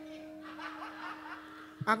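Faint audience chuckling and laughter under a low, steady held tone. The tone stops near the end, where a man's voice comes in.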